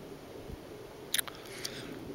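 Quiet background with a soft low thump about half a second in and two brief sharp clicks just after a second in.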